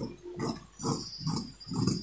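Fabric shears cutting through cotton cloth on a table, a series of short crunching snips about twice a second.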